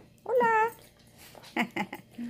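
A dog whining: one high, drawn-out whine, then two short whimpers falling in pitch about a second later.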